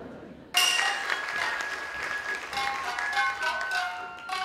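Rakugo entrance music (debayashi) with plucked shamisen starts abruptly about half a second in, with audience applause under it.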